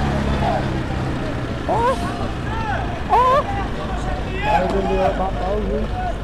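Several people shouting in the street, their voices rising and falling in short calls, over a steady low rumble.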